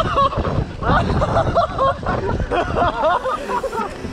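Several riders' voices calling out over a low wind rumble on the microphone. The rumble drops away about three seconds in.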